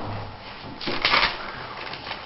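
Sheets of paper rustling as they are handled on a desk, loudest in a short burst about a second in.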